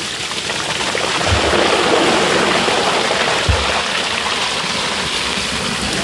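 Water gushing steadily out of a tipped plastic drum into a tank, carrying a mass of stinging catfish (shing) fry with it. Two short low thumps come through the pour.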